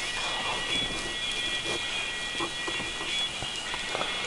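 Steady background noise with several faint, high-pitched steady tones held throughout, and a few soft knocks.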